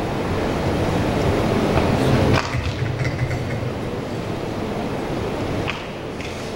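Steady low rumbling room noise with a hiss over it, which drops noticeably in level about two and a half seconds in; a faint click near the end.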